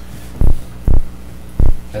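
Three dull, low thumps within the first two seconds, louder than the surrounding talk, over a steady low electrical hum.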